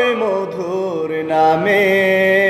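A man singing unaccompanied, holding long drawn-out notes of a Bengali devotional song; the pitch slides down just after the start and steps back up about one and a half seconds in.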